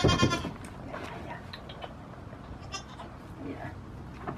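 A goat bleats once, a short call at the very start, the loudest sound here. A fainter, higher call follows about three seconds in.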